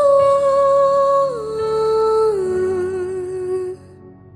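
Pop music with a wordless vocal line: a singer holds three long notes, each one lower than the one before, with a slight waver. The voice cuts off shortly before the end.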